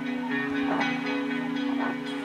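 Live rock band's electric guitars holding a sustained, ringing chord with a bell-like quality.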